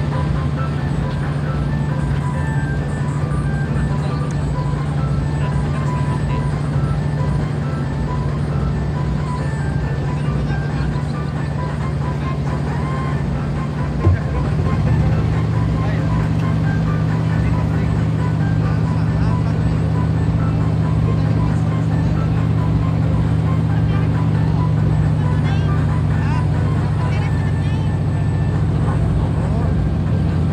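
A klotok river boat's inboard engine running steadily, picking up a little after a single knock about halfway through. Music plays under it.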